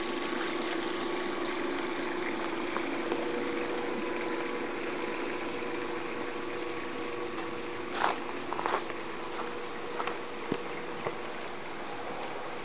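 Above-ground pool's cartridge filter pump running with a steady hum over a rush of circulating water, the hum weakening about two-thirds of the way through. A few short knocks near the end.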